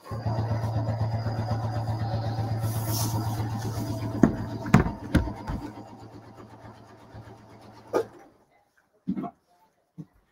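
Janome sewing machine stitching binding onto a quilt, running at a steady speed with a fast, even rhythm, then slowing gradually and stopping about eight seconds in. A few sharp clicks come about halfway through, and one more as it stops.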